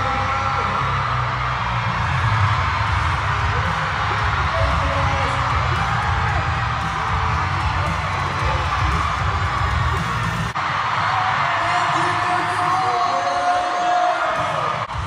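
Loud pop music with a heavy bass over an arena crowd of fans screaming and cheering. The bass drops out about ten seconds in, leaving the cheering and a long held voice near the end.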